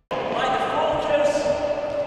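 Youth football training: children's voices calling out across the pitch, mixed with the thuds of a football being kicked.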